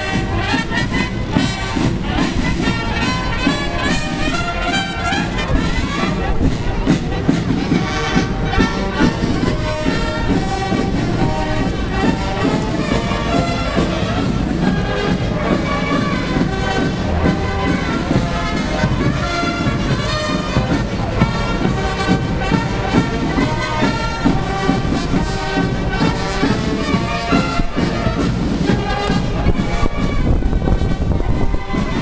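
A brass band playing a piece, the music continuous throughout.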